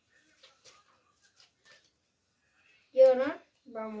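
Playing cards handled and sorted by hand, giving a few faint soft clicks and rustles, followed about three seconds in by a child's voice speaking.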